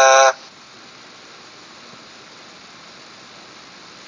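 A recorded male voice reciting Quranic Arabic from an Iqro learning app holds its last note and cuts off suddenly about a third of a second in. After that there is only a steady faint hiss.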